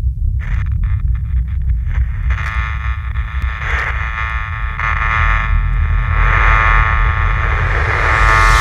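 Ambient intro of a heavy metal song: a low rumbling drone, joined about half a second in by layered sustained high tones that swell and fade in waves as the intro builds.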